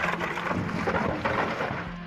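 A huge stone block breaking apart and collapsing: a rumbling crash of tumbling rock and debris with a few heavier knocks, easing slightly near the end.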